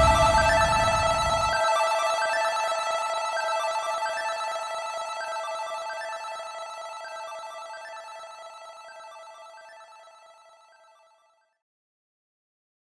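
End of an electronic music track: a noisy low part cuts off about a second and a half in, leaving a sustained synth chord with a repeating higher note pattern that fades out slowly over about ten seconds.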